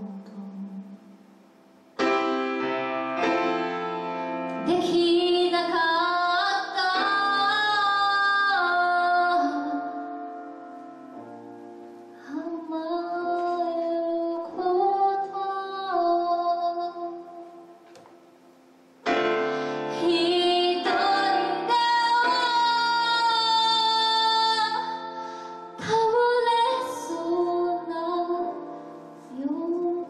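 A woman singing in Japanese while accompanying herself on a grand piano. Two long sung phrases begin about two seconds in and again a little past halfway, each after a quiet dip where only soft piano carries on.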